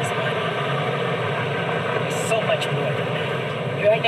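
Steady background rumble with faint, indistinct voices.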